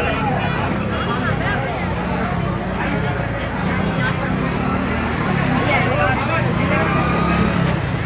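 Busy street crowd: many people talking at once over the steady running of a vehicle engine.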